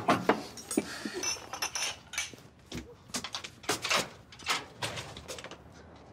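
Cutlery and dishes clinking at a dinner table: a loose run of short clinks and knocks, a few of them ringing briefly.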